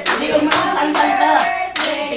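Rhythmic hand-clapping, about two claps a second, with voices singing along.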